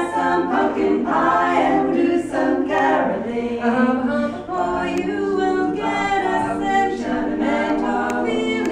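A women's a cappella quartet, four female voices singing in close harmony without accompaniment, phrase after phrase of held chords.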